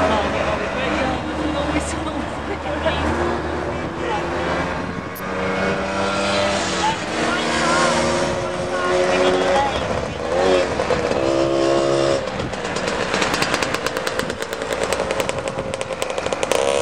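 Engines of a slow convoy of small cars and motor scooters in traffic, their tones rising and falling. Near the end a scooter's engine runs close by, its rapid, even firing pulses standing out.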